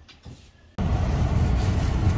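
Faint room tone, then a sudden cut about a second in to the steady low rumble of road and engine noise inside a Ram pickup truck's cabin as it drives.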